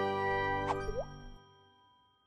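Closing music sting of an animated channel logo: a held chord fading out, with a short swooping plop just before a second in, dying away by about a second and a half.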